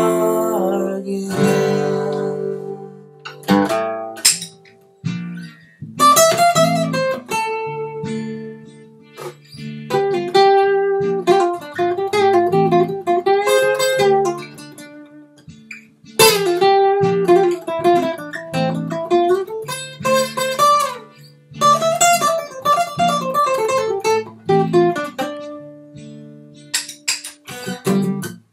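Acoustic guitar played alone in an instrumental break: strummed chords with a picked melody over them, in phrases of a few seconds with short pauses between.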